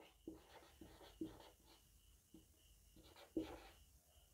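Faint scratching of a marker pen writing on a whiteboard, in a few short strokes, the clearest about a second in and again near the end.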